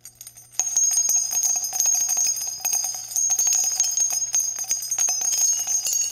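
Bells jingling and ringing steadily, a dense run of quick strikes with high ringing tones that starts about half a second in and cuts off suddenly at the end, over a low steady hum.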